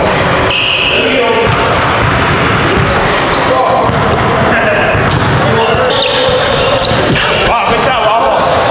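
A basketball bouncing on a hardwood gym floor, with players' indistinct voices echoing in the large hall.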